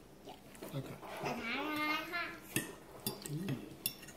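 A child's drawn-out, wordless vocalisation about a second in, followed by a few light clinks of a fork on a plate.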